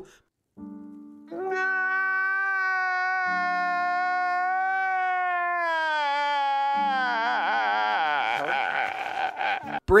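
A man crying out in one long, drawn-out wail that sinks slightly in pitch, then breaks into shaky, wavering sobs about seven seconds in, over slow piano chords.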